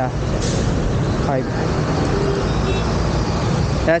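Road traffic: a motor vehicle's engine running close by, a steady low rumble.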